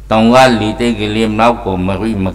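An elderly Buddhist monk's voice reciting in a chanted, intoned delivery through a microphone, several drawn-out phrases in a row, over a steady low electrical hum.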